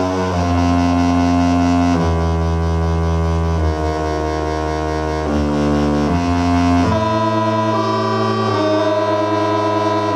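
Live electronic music: sustained keyboard synthesizer chords over a deep bass, changing chord every second or two, with no drum beat.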